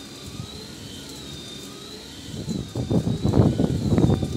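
Rustling and knocking from the phone being handled, louder in the second half, over a faint high, slowly wavering electronic-sounding tone.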